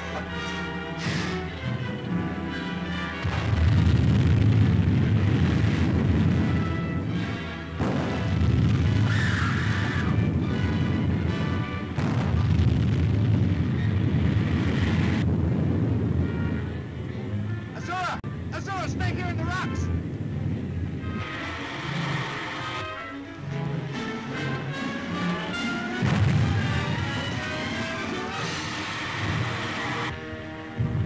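Film soundtrack of an air attack: dramatic background music over heavy, repeated booms of explosions, loudest in the first half. A brief wavering high tone sounds a little past the middle.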